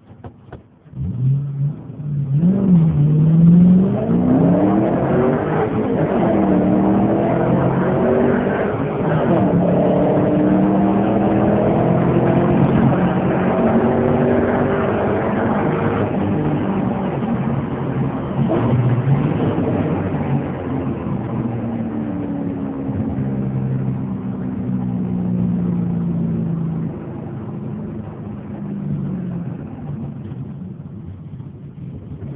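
2010 Mustang GT's 4.6-litre V8, heard from inside the cabin, accelerating hard from a standstill to about 100 mph. The engine note climbs in each gear and drops back at each upshift. About halfway through the power comes off and the engine winds down steadily as the car slows.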